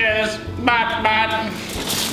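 A person's voice chanting "bot bot" as a robot, two drawn-out syllables about half a second apart.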